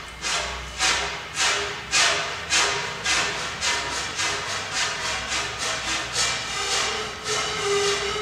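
Bamboo siku (Andean panpipe) blown hard in breathy, rhythmic puffs, about two a second, the rush of air louder than the pitched notes. A low held pipe note grows stronger near the end.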